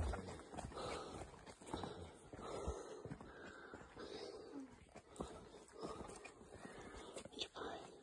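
A dog whining softly in short, repeated bouts, with footsteps on a dirt trail.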